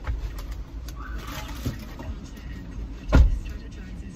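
Low steady rumble inside a car's cabin, with light rustling and clicks, and one heavy thump about three seconds in.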